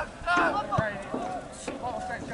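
Distant shouting voices of players and spectators across a soccer field, with a single dull thump a little under a second in.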